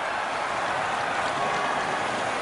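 Steady crowd noise in a hockey arena in the seconds right after a goal.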